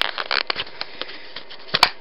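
Clear plastic packaging crinkling and crackling as it is pulled and torn off a set of juggling balls by hand, in scattered sharp clicks with a louder snap near the end.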